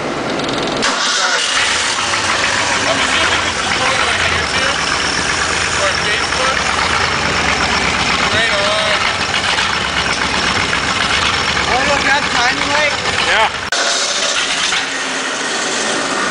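Ford 302 V8 starting about a second in and running steadily and loudly for about thirteen seconds, then cutting off suddenly. The engine is running with a rod bearing missing on number one cylinder and a second compression ring missing on number three.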